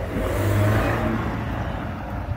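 A small car passes close by and drives on ahead, its engine and tyre noise swelling to a peak within the first second and then easing off.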